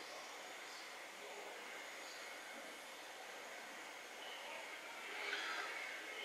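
Quiet room tone: a faint steady hiss, with a slightly louder soft rustle near the end.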